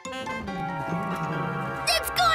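A cartoon cat's low growl that slides down in pitch over the first second, under children's cartoon music holding a sustained chord.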